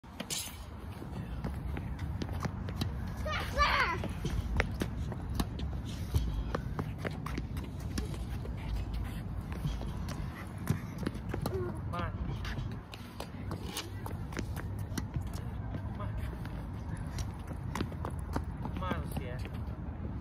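Tennis balls being struck with a racket and bouncing on a hard court, heard as many sharp pops scattered throughout, mixed with footsteps on the court over a steady low rumble.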